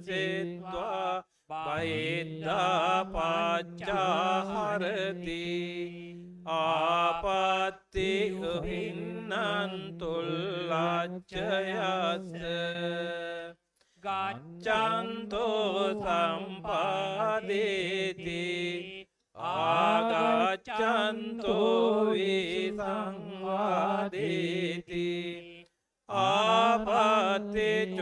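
Buddhist monks chanting Pali scripture from the Tipitaka into microphones, in a steady recitation tone held on one low pitch, in phrases a few seconds long broken by short breath pauses.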